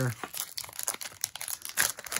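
Foil wrapper of a hockey card pack crinkling and tearing as it is ripped open by hand, with a louder rip near the end.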